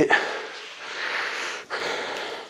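A man breathing heavily after a strenuous suspension-strap push-up set: one long breath, with a brief pause near the end before the next.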